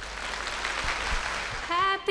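Audience applauding, with singing fading in near the end.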